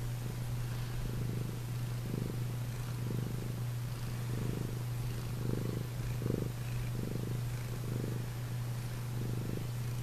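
Tabby cat purring close up, the purr swelling and easing in a regular rhythm about once a second with each breath, over a steady low hum.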